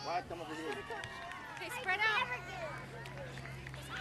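Voices of young children and adults talking and calling out, with a steady low hum underneath.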